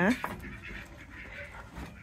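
A woman's brief spoken word, then faint rustling of hay as a goat eats from a wooden pallet hay feeder.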